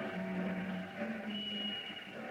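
Orchestral bridge music between two scenes of a radio drama. Strings hold sustained notes that fade away, with one high held note near the end.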